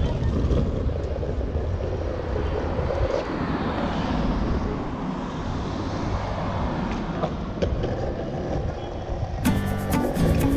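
Surfskate wheels rolling over asphalt: a steady, low rumble of road noise with a few sharp clicks. Music comes in near the end.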